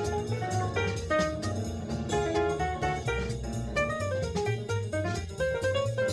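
Cool jazz small-group recording: a quick line of short melody notes over a steady upright bass line and a drum kit with cymbals.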